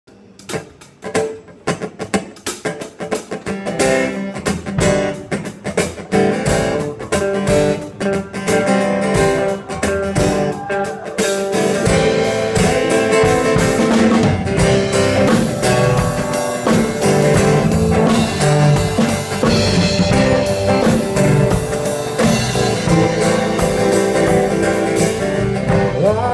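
Live band music, guitar with drum kit: a sparse opening of sharp rhythmic hits and guitar that fills out into the full band about halfway through.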